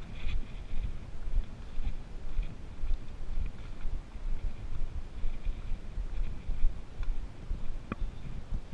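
Footsteps and trekking-pole tips striking a leaf-littered dirt trail at a walking pace, in uneven beats about twice a second over a low rumble, with one sharp click near the end.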